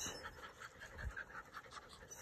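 Several Labrador retriever puppies panting faintly, hot and excited while they wait to be fed.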